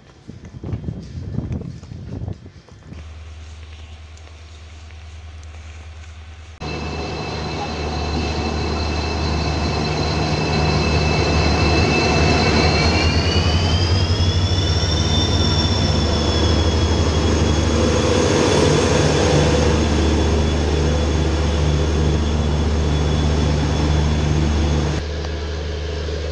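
Footsteps for the first few seconds, then an Indian Railways diesel locomotive's engine running at a standstill: a deep steady hum with a high whine over it that rises in pitch about halfway through and holds there. The sound drops off abruptly near the end.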